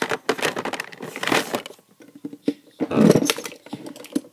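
Handling noise: clicks and rustling of small plastic makeup containers being picked up and opened, with a louder rustle about three seconds in.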